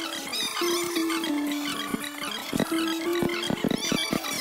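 Pop-rock song playing from a music video: a melody of held notes, with percussive hits coming more often in the second half.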